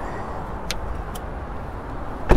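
Steady low rumble of motor vehicle noise, with two faint short clicks near the middle.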